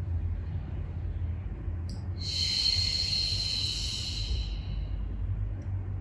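A woman's long, forceful exhale through pursed lips, a hissing 'shh' that starts about two seconds in, lasts about three seconds and fades away, as the abdominal muscles are pulled in toward the spine in a Pilates breathing exercise. It sounds over a steady low hum.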